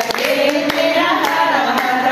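Voices singing a song with hand clapping keeping time, about two claps a second.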